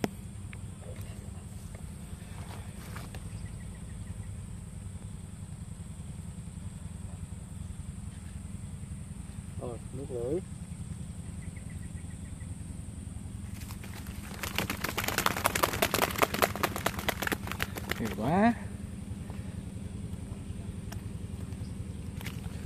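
A small engine runs steadily with a low throb. About fourteen seconds in, there are four seconds of loud crackling and rustling of leaves and stems as a freshly landed fish thrashes in water hyacinth while it is grabbed by hand.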